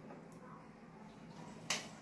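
A metal serving spoon clinking once, sharply, against a metal kadhai (wok) near the end, with little else heard before it.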